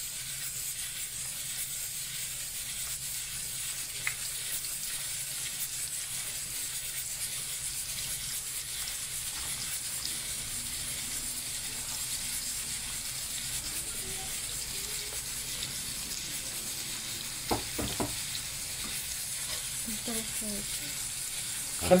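Floured cauliflower croquettes sizzling steadily in hot oil in a frying pan, with two short knocks about three-quarters of the way through.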